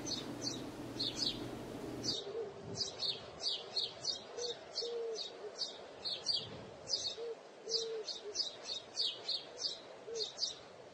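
Birds chirping: short, high chirps repeating several times a second, with a few short low notes beneath them.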